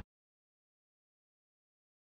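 Silence: the soundtrack is empty after the music cuts off.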